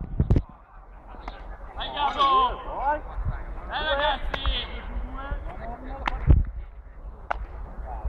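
Players calling and shouting across a baseball field, with a few sharp smacks of a baseball caught in leather gloves; the loudest smack comes about six seconds in.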